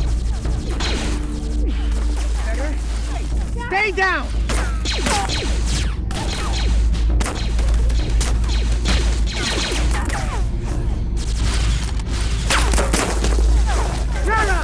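Sound-designed blaster battle: many sharp blaster shots in quick succession, some with a falling, zapping pitch, over a constant deep rumble with booms and impacts.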